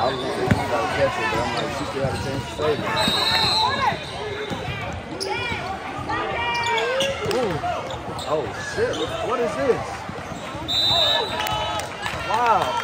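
Indoor basketball game: a ball bouncing on the hardwood court amid the shouts of players and onlookers in a large echoing gym. A referee's whistle sounds briefly twice, about three seconds in and again near the end.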